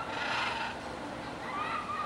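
Cockatoo squawking: a harsh squawk of about half a second near the start, then a shorter wavering call near the end.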